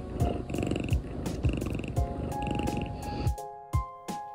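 Pet cat purring loudly with its muzzle in an AeroKat inhaler mask: a low, pulsing purr from a cat that is relaxed with its asthma treatment. Light background music plays along, and the purring stops suddenly about three seconds in, leaving only the music.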